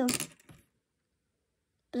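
A Skittles candy dropped into a plastic bowl, landing with a couple of light clicks.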